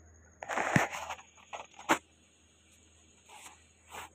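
Metal ladle stirring and scraping fried onion, tomato and spice masala against the bottom of an aluminium pressure cooker: a rough scrape about half a second in, then sharp metal clinks near two seconds and again at the end.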